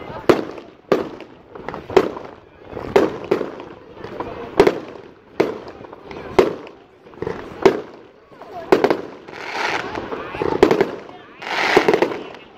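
Fireworks display: aerial shells bursting in a string of loud bangs, roughly one a second. In the second half the bangs are mixed with longer hissing crackle.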